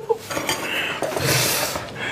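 Plates and cutlery rattling on a kitchen table that is being jostled by an arm wrestle.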